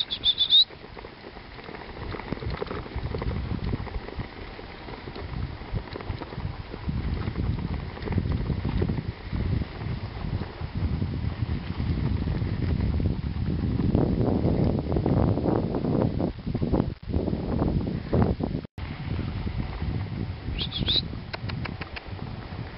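Rumbling noise of a dog-pulled rig travelling over a snowy track behind a team of four Alaskan malamutes, with wind on the microphone. It is loudest a little past the middle. A brief high squeak comes right at the start and another near the end.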